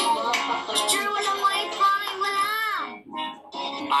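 A children's song about the five senses, sung over a music track. The voice slides down about two and a half seconds in, and there is a short break just after three seconds.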